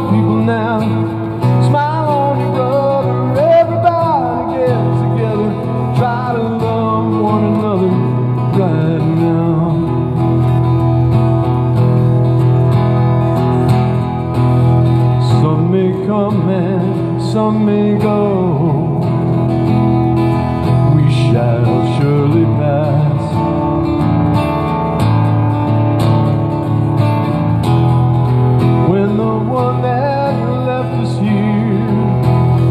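Acoustic guitar strummed steadily in a live song, with a man singing over it in places.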